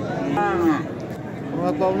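A single short moo from cattle, falling in pitch toward its end.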